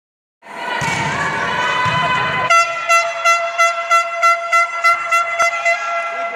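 A horn sounding one steady note over crowd noise in a sports hall, from about halfway on pulsed in a regular beat about three times a second. A single sharp knock comes near the end.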